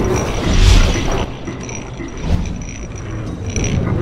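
Sound effects of an animated logo sting: a deep boom with a whoosh near the start, then metallic mechanical clicking and creaking broken by a couple of sharp knocks.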